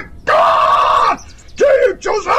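A voice shouting "God!", the word held strained and loud for about a second, then a second, shorter yell near the end.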